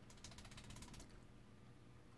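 Near silence: a quick run of about a dozen faint ticks in the first second, then low room tone.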